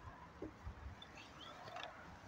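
Quiet outdoor background with faint, scattered low thumps of footsteps on asphalt and phone handling, and a few faint high chirps.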